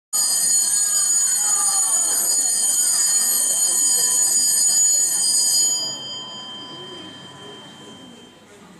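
Electric bell ringing loudly and steadily with a shrill, high-pitched tone for about six seconds, then cut off and fading away.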